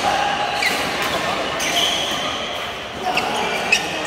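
Badminton play in a large hall: sharp racket hits on shuttlecocks and short rising squeaks of shoes on the court floor, over a constant echoing din. The loudest hit comes near the end.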